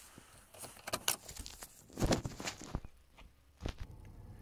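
Car key clicking and rattling in the ignition lock of an Audi A6 C5 as it is turned to the ignition-on position: a handful of short clicks, the loudest about two seconds in.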